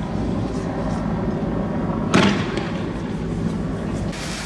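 A single loud shot about two seconds in, with a short echoing tail, over a steady din of background noise.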